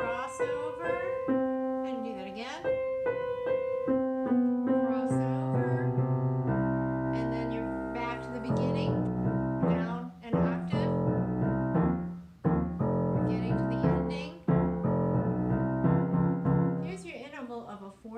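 Acoustic grand piano played: single notes in the middle and upper register, then about five seconds in low bass notes join and both hands play together.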